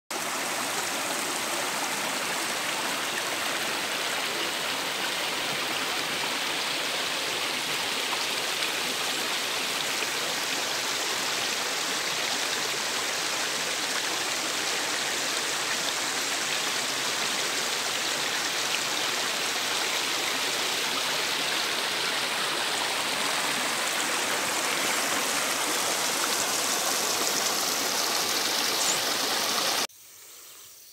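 Shallow stream flowing over rocks and stones, a steady rush and babble of water that cuts off abruptly at the very end.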